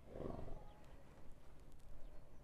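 A Silesian Noriker filly blowing air out through its nostrils once, a short breathy blow right at the start.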